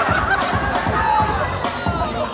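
A crowd of party guests whooping and shouting over loud dance music with a steady beat.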